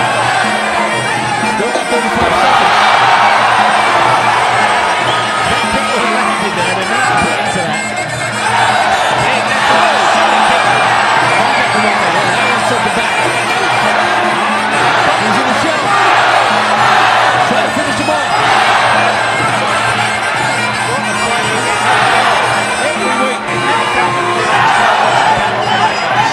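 Traditional Muay Thai ring music (sarama) with its reedy pi java oboe playing steadily under a cheering crowd, whose shouts swell and fade several times as the fighters exchange.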